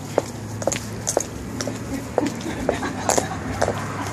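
A white mobility cane tapping on the pavement along with walking footsteps, making sharp clicks about twice a second over a low steady hum.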